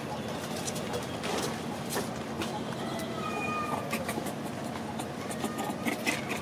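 Steady outdoor background with scattered small clicks and a few short, high animal calls about halfway through.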